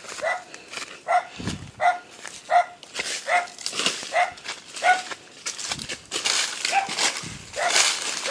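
A dog barking over and over, about ten short barks at a steady pace of roughly one every two-thirds of a second. Dry leaves rustle underfoot, mostly near the end.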